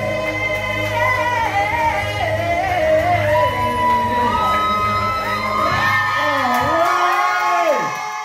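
A singing voice carrying the closing phrases of a song over a backing track with a steady bass. The backing drops out near the end, and the voice finishes with a run that slides sharply down in pitch.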